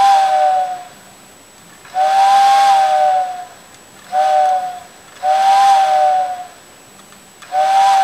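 Vintage TYCO model-railroad steam locomotive whistle, blown by a replacement CD-player can motor, sounding in separate blasts at each button press. Each blast is a steady two-note whistle with an airy hiss. The first blast ends about a second in, then come a long, a short and a long blast, and another starts near the end. It runs with no vibrating noise, the sign of a successful motor upgrade.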